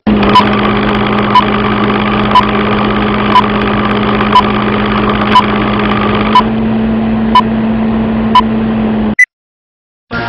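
Film-leader countdown sound effect: a steady, projector-like mechanical hum with a short beep-tick once a second. It cuts off suddenly a little after nine seconds, with a last brief blip.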